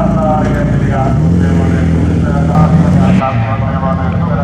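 Several folkrace cars racing on a dirt track, their engines running hard, one holding a steady note for about two seconds midway, with a voice talking over them.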